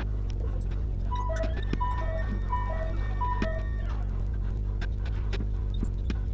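Marker writing on a glass board, small ticks and taps over a steady low hum. From about a second in, a two-note tone, high then low, repeats four times.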